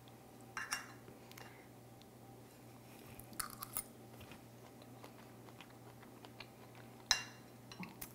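Quiet eating sounds: a metal spoon scraping on a ceramic plate about half a second in, then a few soft mouth sounds of chewing a bite of sticky rice and mango, and a short sharp click near the end, over a faint steady hum.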